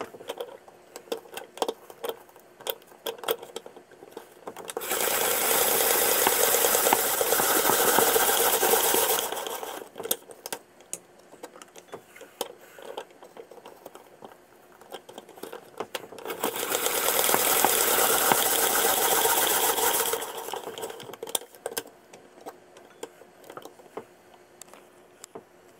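Hand-crank spiralizer cutting a sweet potato into spiral strands: two stretches of steady crunching as the crank turns, each about four seconds long, with scattered sharp clicks and knocks from the handle and the machine between them.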